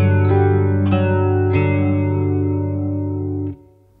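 Electric guitar picking a G major 7 chord with no third, one string at a time, the new notes adding to a ringing chord. The chord is damped abruptly about half a second before the end.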